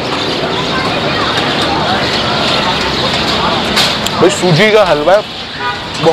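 Street traffic noise, a steady din of passing vehicles, with a person's voice breaking in about four seconds in and again near the end.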